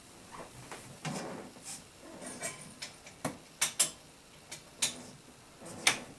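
A string of short knocks and clicks as a person moves about the room and flips a wall light switch off. The two sharpest clicks come close together about two-thirds of the way through, and another comes just before the end.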